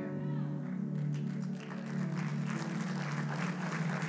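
Soft background music holding sustained low notes, with scattered clapping from the congregation starting about a second in.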